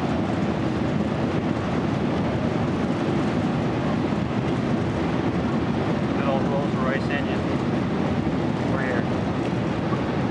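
Steady roar of an airliner heard from inside its cabin as it rolls out along the runway just after landing and reverse thrust. Faint voices come through the noise in the second half.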